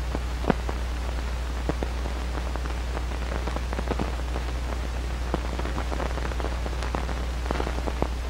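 Surface noise of an old film soundtrack where no sound was recorded: steady hiss and a low hum, with irregular crackles and pops, one louder pop about half a second in.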